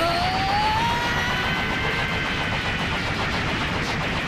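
Dense, unbroken barrage of anime punch and impact sound effects from a rapid-fire punching attack. A pitched tone rises over it in the first second, holds, and fades away.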